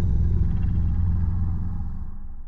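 Deep rumbling tail of a logo sound effect, slowly fading out.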